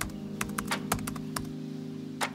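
Computer keyboard typing clicks, a quick irregular run of keystrokes that stops about a second and a half in, over sustained piano music.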